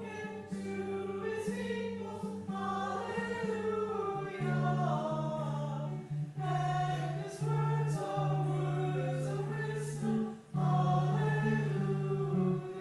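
Choir singing a hymn in phrases, over steady, held low accompanying notes, with brief breaths between the lines.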